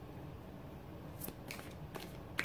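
Tarot cards being shuffled in the hands: after a quiet start, a few short, crisp card snaps about a second in.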